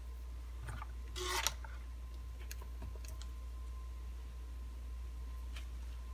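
Power cord being handled and its plug pushed into the socket to power up the radio: a brief rustling scrape about a second in, then a few faint clicks, over a low steady hum. A faint steady high whine begins just after the scrape.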